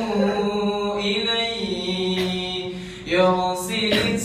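A young man's voice chanting melodically into a microphone in long, drawn-out held notes that glide slowly in pitch. The voice dips about three seconds in, then comes back louder on a new phrase.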